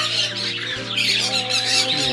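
Many caged parrots and other pet birds chattering and squawking together, a dense, busy chorus of short high calls.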